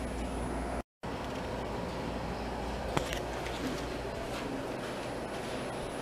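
Steady low background hum of indoor room tone, broken by a brief cut to silence just before one second in, with a single sharp click about three seconds in.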